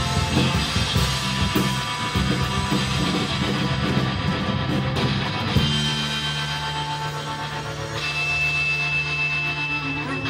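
Live rock band playing an instrumental passage on electric guitars, bass and drums. About halfway through the beat stops and a chord is held ringing.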